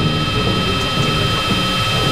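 Industrial noise music: a loud, dense drone with several steady high-pitched tones held over a churning low rumble.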